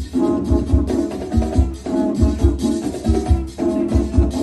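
A band of conch shell horns blowing held notes together in harmony, the notes changing every half second or so, over a steady beat from a large bass drum and congas.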